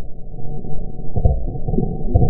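Muffled rumbling and rubbing picked up by a helmet camera, with a loud knock about a second in as the camera breaks loose from the helmet.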